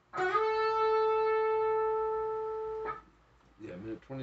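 Electric guitar note on the G string, slid up from the 11th to the 14th fret and held for nearly three seconds before it is cut off.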